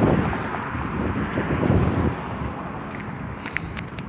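Wind buffeting the microphone: an uneven rumble that eases about two seconds in, with a few faint clicks near the end.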